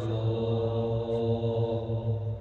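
A male qari reciting the Quran in melodic tajwid style, holding one long note at a steady pitch.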